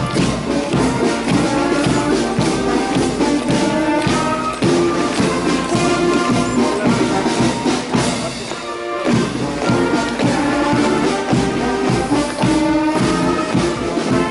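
Brass band playing a march, with sustained brass tones over a regular drum and cymbal beat; the music briefly thins out about halfway through, then carries on.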